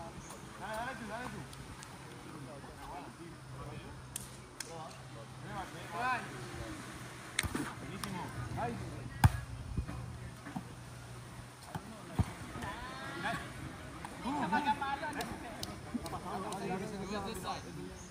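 Volleyball being hit by players' hands and forearms in a casual outdoor game: several sharp slaps a few seconds apart, the loudest about nine seconds in, with players' voices and shouts between the hits.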